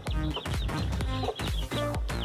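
A broody hen sitting on eggs clucking, over background music.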